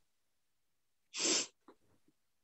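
One short, sharp breath from a woman mid-speech, a noisy puff of air about a second in, with no voice in it.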